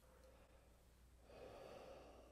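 Faint, slow, open-mouthed exhale by a man, the warm breath used to fog a mirror, swelling about a second in and lasting about a second. It demonstrates the deep, warm, fast air wanted for playing the trombone.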